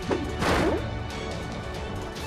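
Cartoon soundtrack music with a short sound-effect burst about half a second in.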